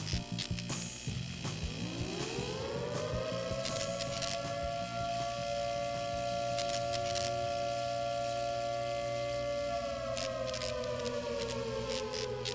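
Synthesized logo-sting sound effect: glitchy clicks over a low pulsing beat, then a siren-like tone that rises over about a second and a half, holds steady for several seconds and slowly sinks near the end.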